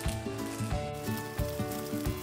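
Background music: steady held notes over a beat of low hits about every two-thirds of a second.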